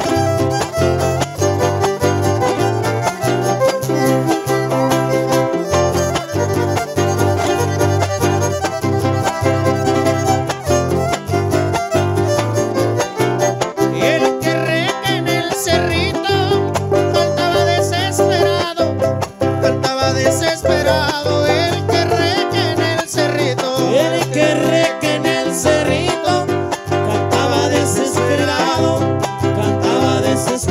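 Live huapango huasteco music: a violin plays a lively, ornamented melody over a strummed small guitar and a steady bass rhythm, getting more wavering and busier in the upper melody about halfway through.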